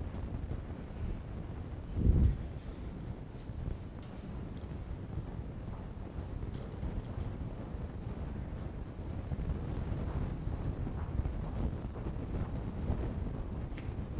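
Low, steady rumbling noise with one dull thump about two seconds in.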